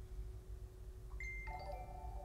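Electronic alert chime signalling a Patreon pledge on a live stream. A single high tone sounds about a second in, and a few lower chiming notes follow, over a faint steady hum.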